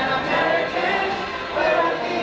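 Music with a group of voices singing together.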